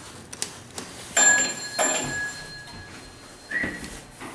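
Elevator arrival bell striking twice, about two-thirds of a second apart, each strike ringing on and fading. Near the end comes a short sliding sound as the hydraulic elevator's doors start to open.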